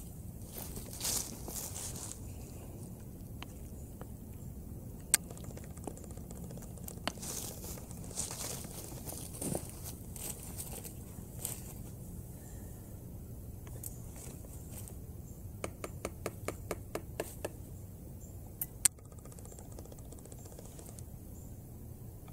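Metal spoon stirring split pea soup in a steel canteen cup, with scattered sharp clinks against the cup and a quick run of about ten clinks a little past halfway.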